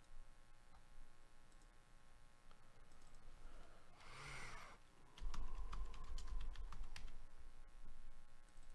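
Typing on a computer keyboard: a quick run of key clicks starts about five seconds in over a low hum. Just before it comes a brief breathy rush of noise.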